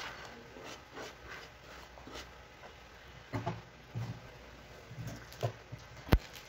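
Faint kitchen handling noises on a counter: a few soft knocks and light rustles as dishes and a plastic-wrapped pack are moved about.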